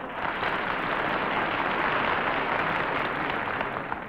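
Studio audience applauding, steady and even, fading out right at the end.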